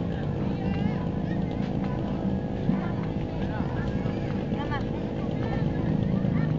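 Babble of many people talking, with children's short high-pitched calls rising and falling, over a steady low rumble.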